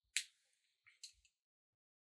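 Two short, sharp clicks about a second apart, the first one louder.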